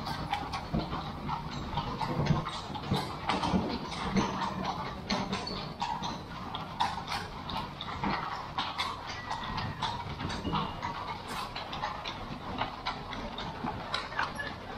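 Carriage horses clip-clopping on cobblestones: a steady run of sharp hoof clops from a horse-drawn carriage.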